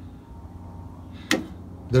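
A single sharp knock about a second and a half in, a hand meeting the sheet-metal fan shroud of an air-cooled VW Beetle engine, over a low steady background hum. A man's voice starts at the very end.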